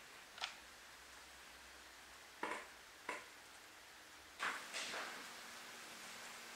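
Quiet handling noise: a few light clicks and taps, spaced a second or so apart, with a small cluster of them about four and a half seconds in, over faint hiss.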